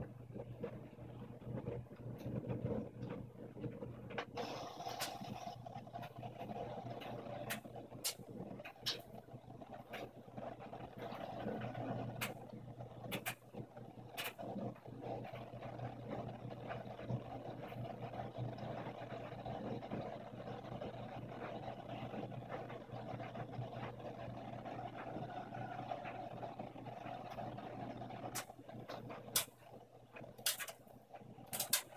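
Brastemp front-loading washing machine tumbling a wash load of bedding: a steady hum from the drum motor with wet fabric and water churning as the drum turns, and occasional short sharp clicks.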